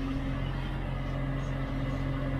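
Tractor engine running steadily, heard from inside the closed cab as an even low hum.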